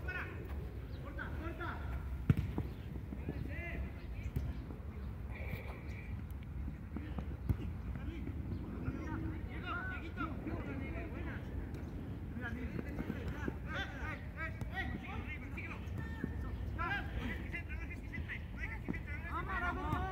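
Faint, distant shouts of football players across the pitch over a steady low rumble, with two sharp thumps of the ball being kicked, about two seconds in and again past seven seconds.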